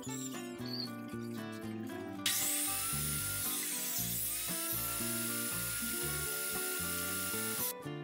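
Table saw running and cutting a slot into the corner of a small mitred wooden frame held in a spline jig, for about five seconds from roughly two seconds in, starting and stopping abruptly, over background music.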